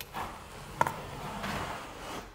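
A drywall flat box pressed against the wall as its handle is pushed, squeezing the box's mouth to force joint compound out through the finishing edge: faint handling noise with one sharp click a little under a second in.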